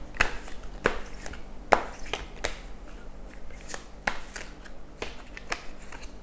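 Glossy-finish tarot cards being shuffled by hand: a string of sharp flicks and slaps, irregular and loudest in the first two or three seconds, then lighter.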